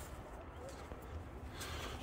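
Faint low outdoor background rumble, with a brief rustle near the end.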